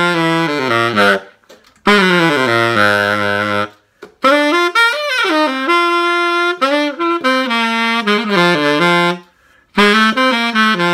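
Selmer Balanced Action tenor saxophone playing jazz lines in three phrases broken by short breaths, reaching down to low notes in the first two. It is test-played as found, on its original pads with no resonators.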